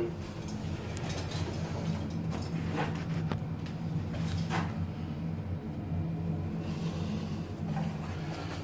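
A steady low hum, with a few faint brushing sounds from hands working painter's tape on a freshly tiled shelf: one at the start, one near the middle and one a couple of seconds later.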